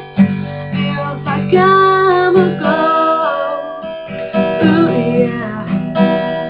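Acoustic guitar being strummed, ringing chords with a fresh strum every second or two.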